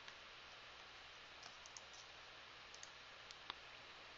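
Near silence, with a few faint computer mouse clicks in the second half, the sharpest about three and a half seconds in.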